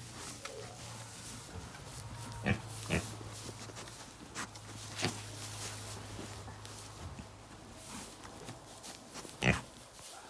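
Pigs grunting low and quiet, with a few short, sharper grunts spread through.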